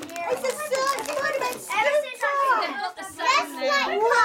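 Children's voices talking over one another, high-pitched.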